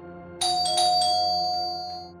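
Two-note ding-dong doorbell chime sounding about half a second in and ringing out, over steady background music: someone is at the door.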